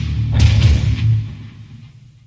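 The last seconds of a heavy rock song: the band's final chord, with a sharp hit about half a second in, rings out and fades away.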